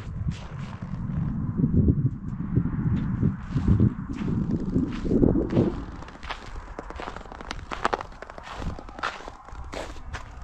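Footsteps on snowy ground, with irregular heavy steps through the first half and sharper, lighter clicks after that.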